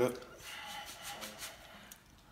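The end of a spoken word, then faint crackly rustling for about a second, with faint voices behind it.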